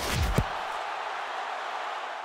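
A short low thump at the start, then steady background noise with no speech, like the open-microphone ambience under a match commentary.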